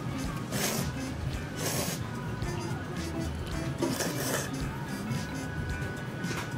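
Background music playing, with three short slurps of thick ramen noodles over it. The loudest slurp comes near two seconds in.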